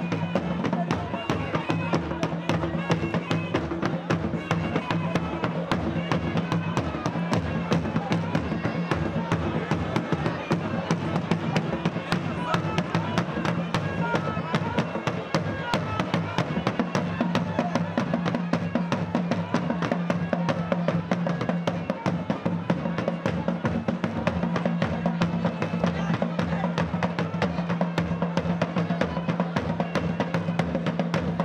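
Live algaita, the West African double-reed shawm, playing a wavering, nasal melody over a drum beaten with a stick in fast, continuous strokes.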